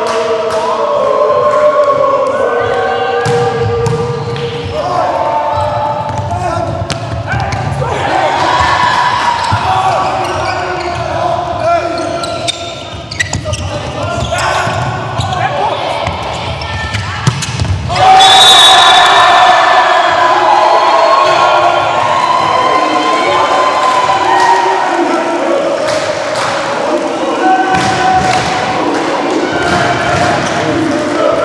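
Volleyball being bounced, served and struck in a sports hall, with sharp ball impacts among the steady shouting of players and spectators. The voices jump to a loud burst about eighteen seconds in.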